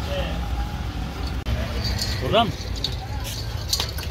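Steady low rumble of an idling vehicle engine under scattered background voices. About two and a half seconds in there is one short call that rises and falls in pitch.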